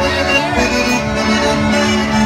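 Live polka band music led by accordion and concertina, holding one chord steady.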